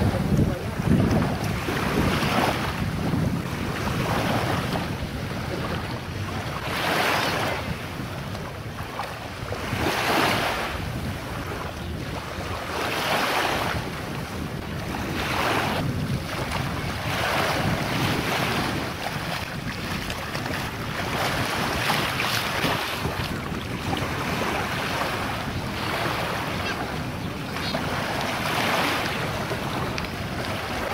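Shallow sea water sloshing and lapping in washes every two to three seconds, over a steady rumble of wind on the microphone.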